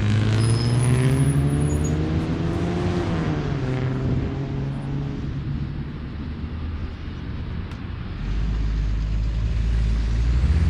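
Road traffic: a vehicle's engine rises steadily in pitch for about three seconds, then drops away, and a second low engine rumble builds near the end.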